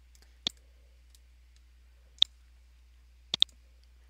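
Computer mouse button clicks: a single click about half a second in, another a little after two seconds, and a quick double click near the end, over a faint low hum.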